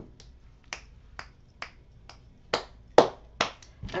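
About eight sharp, separate clicks made by hands, unevenly spaced, the later ones louder.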